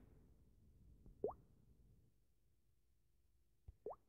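Near silence, broken by two brief plops that sweep upward in pitch, one about a second in and one just before the end, the second preceded by a small click.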